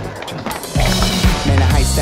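A hip-hop backing track with a short break at the start, in which skateboard wheels are heard rolling on concrete. The bass beat comes back in just under a second in.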